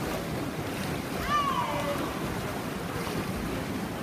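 Butterfly swimmers splashing against the steady hubbub of an indoor pool during a race. About a second in, a spectator shouts once, a long call falling in pitch.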